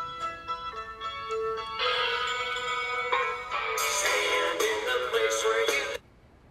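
Music from a short film's soundtrack playing, sustained notes building in layers. It grows louder after about two seconds and fuller again near four seconds, then cuts off abruptly.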